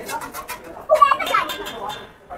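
Background chatter of a group of men, in short broken snatches with scattered clicks and knocks; the loudest snatch comes about a second in.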